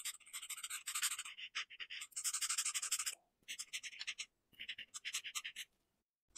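Alcohol marker nib scratching across paper in rapid back-and-forth colouring strokes, about eight a second. The strokes come in runs with two brief pauses and stop shortly before the end.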